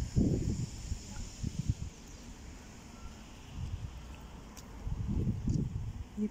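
Outdoor ambience with irregular low rumbling from wind buffeting a handheld phone's microphone, gusting near the start and again in the second half, quieter about two to three seconds in.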